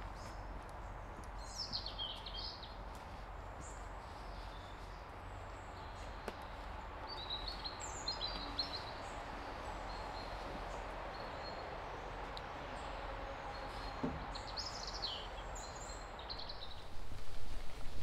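Birds chirping and calling in woodland: short high calls about a second and a half in, around eight seconds and again near fifteen seconds, over a steady background hiss.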